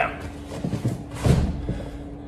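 Dull thuds of a grappler's body and knees landing on foam mats and a heavy grappling dummy as he comes back down off the S-mount, with the heaviest thud a little over a second in.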